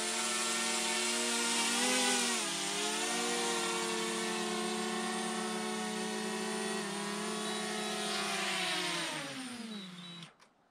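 DJI Mavic Mini quadcopter's motors and propellers whining as it comes in to land, the pitch dipping and rising briefly about two seconds in. Near the end the whine falls in pitch and dies away as the motors spin down on touchdown.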